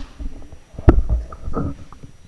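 Microphone handling noise: low thumps and a sharp knock about a second in as a handheld microphone is moved and set into its desk stand.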